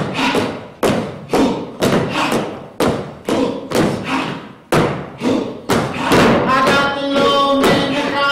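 Heavy thuds struck in a slow, steady beat about once a second, each ringing briefly. About six seconds in, voices come in singing held notes over the beat.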